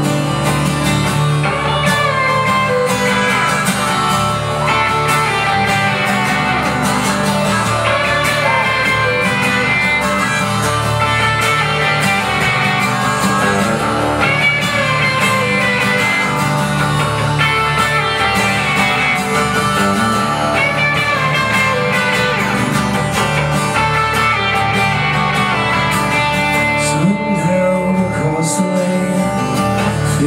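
Strummed acoustic guitar with an electric guitar playing over it, a steady instrumental passage with no singing.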